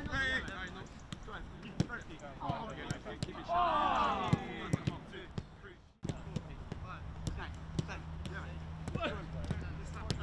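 Footballs being kicked and passed on a grass pitch: a series of short, sharp thuds at irregular intervals, with players' shouts loudest about four seconds in.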